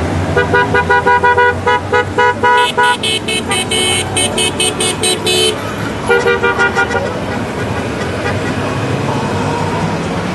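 Horns on Honda Gold Wing motorcycles beeping in quick series, about four short beeps a second, over the low running of the passing bikes' engines. A first horn beeps for the first couple of seconds. A higher, shriller horn then takes over until about halfway, and another short run of beeps follows just after. The engine rumble carries on alone through the last few seconds.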